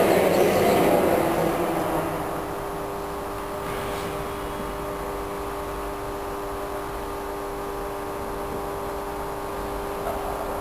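A steady hum with one held tone and fainter overtones, after a louder sound fades away over the first two seconds; a faint click about four seconds in.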